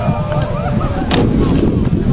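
Wind buffeting the microphone, a heavy low rumble, with distant players' voices calling across the pitch. A single sharp knock sounds just after a second in.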